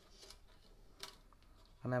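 Faint handling sounds of a ukulele string being fed through the bridge into the body and fished out of the sound hole, with one sharp click about a second in.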